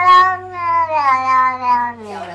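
A long-haired, flat-faced cat giving one long, drawn-out meow that rises at the start, holds, then slowly falls, over a steady low hum.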